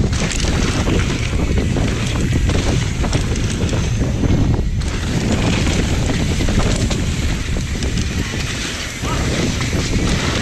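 Wind rushing over a GoPro's microphone and knobby tyres rumbling and clattering over a dirt singletrack as a mountain bike descends at speed, with a brief lull a little before halfway.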